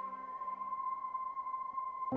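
A single steady electronic tone at about 1 kHz, held for about two seconds, starting and stopping abruptly.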